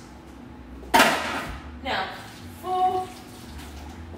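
Tap water splashing into a sink in short bursts as hands are rinsed, the loudest burst starting suddenly about a second in.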